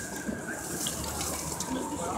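Steady background noise of a busy outdoor street market and the city around it, an even hiss-like wash with no single clear event.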